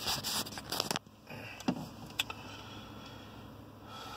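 Phone being handled and repositioned inside a truck cab: rustling and knocking for about a second, then two sharp clicks, over the cab's low steady hum.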